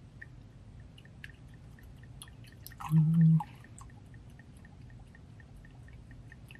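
Red wine pouring from a bottle through a pour-spout topper into a wine glass, a faint trickle with small drips. About halfway through comes a brief low hum, the loudest sound.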